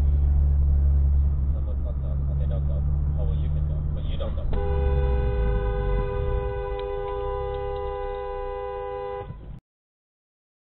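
Car driving with a steady low engine and road rumble picked up by a dashcam, then about halfway through a car horn is held for nearly five seconds on two notes at once. The audio cuts off suddenly near the end.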